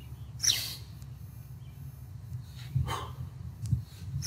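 A man's short, sharp breaths in time with kettlebell swings: a few quick hissing exhales and inhales, the first near the start and two more near the end, over a steady low hum.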